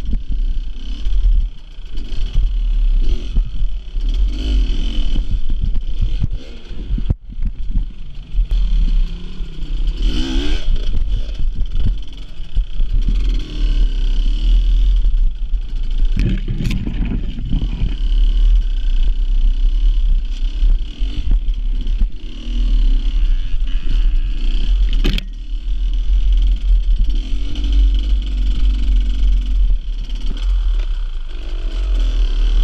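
Enduro motorcycle engine revving up and down under load, with a heavy steady rumble of wind and vibration on the bike-mounted camera's microphone. Brush scrapes past a little past halfway, and sharp knocks come then and again near the end.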